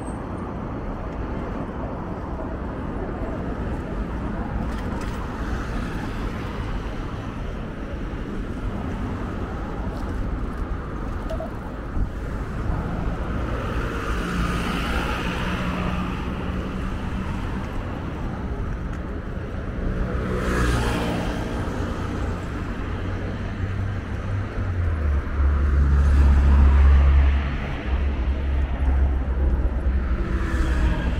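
Urban road traffic: a steady rumble of passing cars. About two-thirds of the way through, one vehicle passes with a sound that falls in pitch, and near the end a louder low rumble lasts a couple of seconds.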